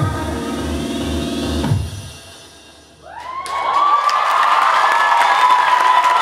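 A pop song with a heavy beat plays, then stops about two seconds in. After a brief lull, the audience starts cheering, shouting and clapping, growing loud and staying loud to the end.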